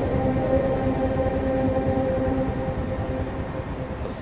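Ambient drone: a low rumble under several steady held tones, easing slightly in level toward the end.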